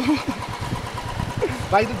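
Royal Enfield single-cylinder motorcycle engine running, a rapid low pulsing under short bits of a man's voice.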